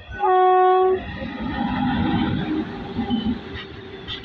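WAG-9HC electric locomotive sounding one short horn blast of under a second, followed by the rumble and clatter of the locomotive and its open freight wagons passing close by.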